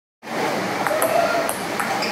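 A table tennis ball clicking sharply a few times against a paddle and the table, over steady background noise that starts suddenly just after the beginning.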